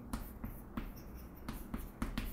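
Chalk writing on a chalkboard: a quick string of short taps and scrapes as letters are written out.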